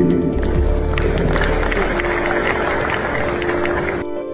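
An audience applauding, starting about half a second in, over background music with a low steady bass note.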